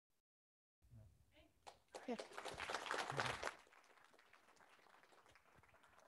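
A small audience applauding briefly, starting about two seconds in and dying away after a second and a half, with a short spoken "yeah" over it. The first moment is dead silent.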